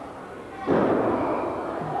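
Body slam in a wrestling ring: a wrestler's body hits the ring mat with one heavy thud about two-thirds of a second in, the noise trailing off over about a second.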